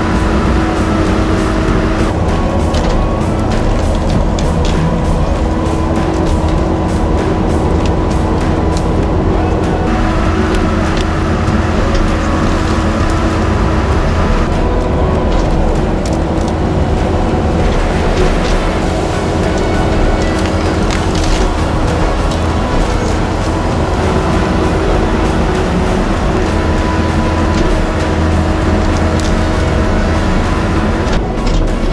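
Kubota compact track loader's diesel engine running at a steady, high working speed with a constant drone, heard from inside the cab as the machine grapples and pushes brush.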